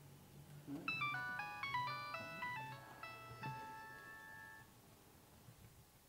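Mobile phone playing a ringtone: a short electronic tune of quick notes that starts about a second in and ends on a held note a little before the end.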